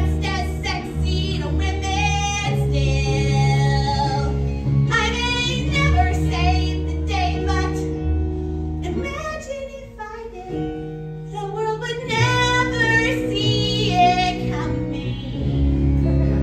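A woman singing a musical-theatre song over instrumental accompaniment. The music thins out and drops quieter about nine seconds in, then comes back in full around twelve seconds.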